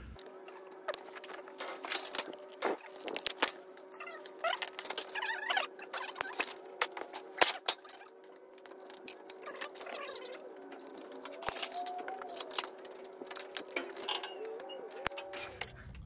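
Hand snips cutting thin aluminum sheet: a long run of sharp clicks and crunches from the blades closing through the metal, over a steady hum.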